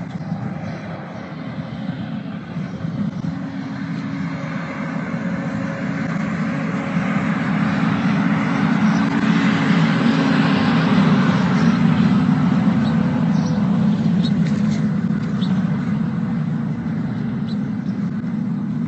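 A steady low engine rumble that grows louder toward the middle and eases off a little after, with a few faint clicks about two-thirds of the way through.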